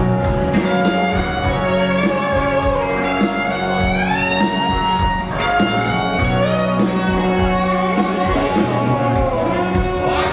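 Live rock band playing, with an electric guitar taking a lead line; a held note bends upward in pitch about three to four seconds in.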